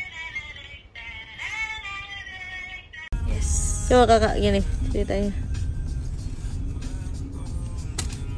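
Singing over background music, cut off abruptly about three seconds in by the steady low rumble of a car cabin on the move, over which a boy's voice rings out loudly for about a second.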